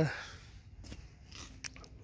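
A man's hesitant 'uh' trailing off, then a quiet pause with a couple of faint sharp clicks, about a second apart.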